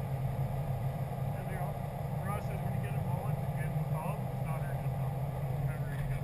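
A Subaru WRX's flat-four engine idling steadily while the car sits stationary, with faint voices in the background.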